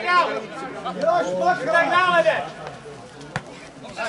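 Men shouting and calling out on a football pitch for the first couple of seconds, then quieter, with one sharp knock a little over three seconds in.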